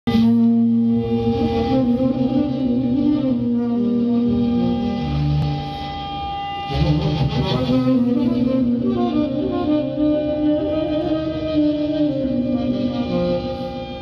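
Saxophone fed through effects pedals and laptop electronics, building a dense layered drone of held tones that overlap and shift pitch in steps. The whole texture drops back briefly about six seconds in, then swells again.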